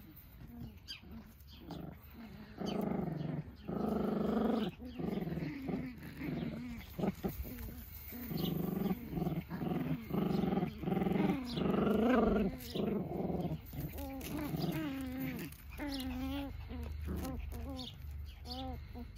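Bolonka puppies growling at play as they wrestle: a long run of short, low growls, with a few higher, wavering calls near the end.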